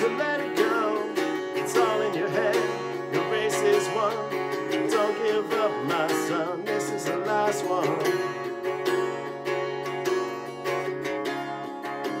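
Acoustic-electric guitar strummed steadily in a solo acoustic cover, with a man's voice singing a wavering line over it; the singing drops out about two-thirds of the way through and the guitar carries on alone.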